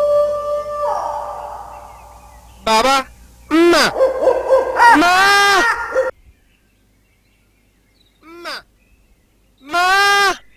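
A held musical note fades out over the first two seconds. Then comes a run of owl-like hooting calls, each bending up and down in pitch: four close together, and after a pause, one short call and one longer call near the end.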